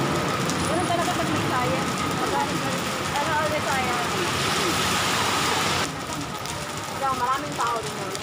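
Rain falling steadily on wet pavement, with faint voices under it; the rain noise drops off suddenly about six seconds in.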